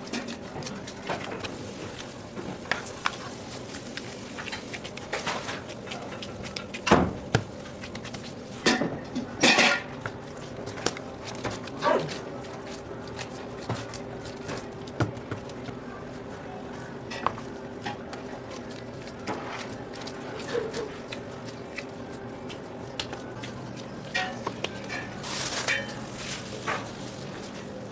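Kitchen work sounds: scattered knocks and clinks on a stainless-steel worktable as dough is handled, over a steady hum. The loudest knocks come about seven and ten seconds in.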